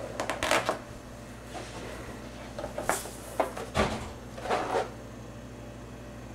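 Red latex balloon being blown up by mouth and then handled: a few short puffs of breath into the balloon and rubbing of the stretched rubber under the hands, with a soft thump near the middle.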